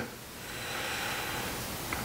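Soft, steady hiss of a person breathing close to the microphone, swelling slightly in the first half-second, with no tool clicks.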